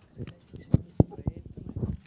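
Microphone handling noise: a run of short, deep knocks and thumps, the two loudest close together about a second in, as a table microphone is moved into place before speaking.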